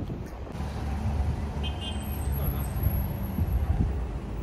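Outdoor city ambience: a steady low rumble, like wind and distant traffic on a phone microphone.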